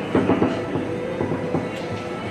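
Rosengart foosball table in play: a quick run of sharp clacks from the ball, player figures and rods in the first half second, then lighter, scattered rattling.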